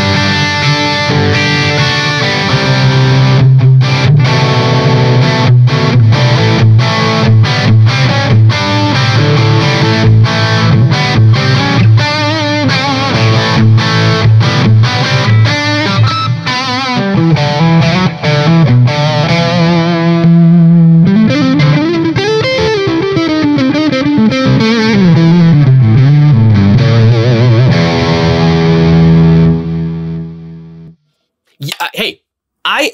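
Distorted electric guitar played through a Marshall JCM800 amp with effects in its loop, attenuated by a Fryette Power Station: chopped rhythm chords with short stops, then a lead line with bends and slides, ending on a held chord.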